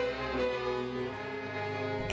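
String orchestra of violins and cellos holding soft, sustained chords, the held notes shifting slowly.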